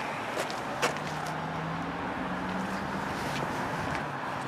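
Steady outdoor vehicle hum with a faint low drone, broken by a few light taps and clicks.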